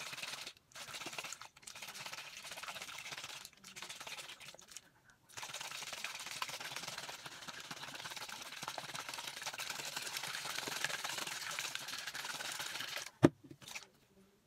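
Small plastic baby bottle of water shaken hard: several bouts of rattling with short pauses, then a longer unbroken stretch, and one sharp knock near the end.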